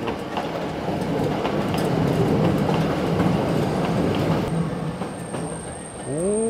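Red Hakone Tozan Railway electric train running past on the track, a steady low rumble with faint clacks from the wheels. A thin high whine comes in about four and a half seconds in.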